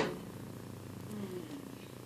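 A low steady hum, with a faint short falling murmur about a second in.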